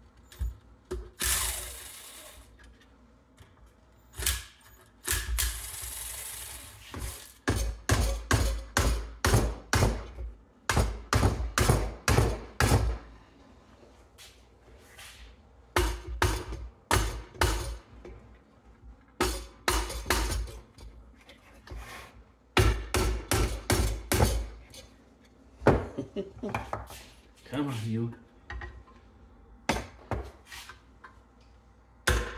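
A cordless drill-driver runs briefly twice near the start. Then a hammer strikes a small Briggs & Stratton engine over and over, in quick runs of blows, about four a second, with short pauses between runs. A short laugh comes near the end.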